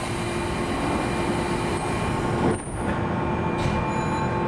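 Running noise heard inside a moving electric commuter train car: wheels on rails and traction equipment, a steady rumble with a steady hum in it. It swells briefly and dips about two and a half seconds in.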